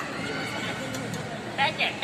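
A person's high-pitched, wavering voice, like a squeal or laugh, near the end, over a steady murmur of background chatter.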